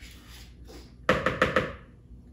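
Spoon scraping cookie dough off a metal baking sheet, with a quick run of several clinks and scrapes about a second in.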